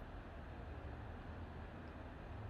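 Quiet, steady room tone: a low hum with a faint even hiss.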